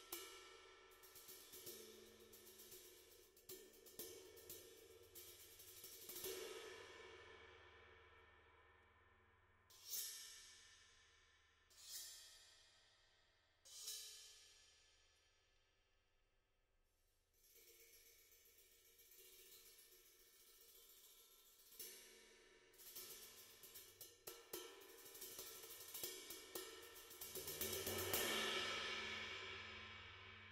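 Sabian Anthology cymbals played softly with brushes: light sweeps and taps with the cymbals washing and ringing. Three sharper strokes about ten, twelve and fourteen seconds in each ring out and fade, and a swell builds near the end.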